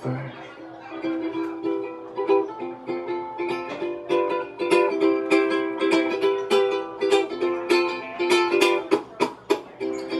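Ukulele strummed in a steady rhythm, an instrumental passage of a live song between sung lines. The strumming grows busier about halfway through.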